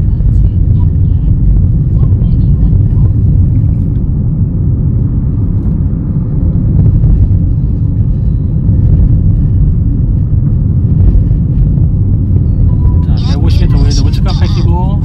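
Steady low rumble of road and engine noise inside the cabin of a Chevrolet car driving along at about 50 km/h. A man's voice starts speaking near the end.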